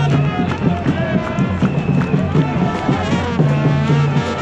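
Sri Lankan papare band playing: brass horns carrying the tune over a steady drum beat, with crowd noise around it.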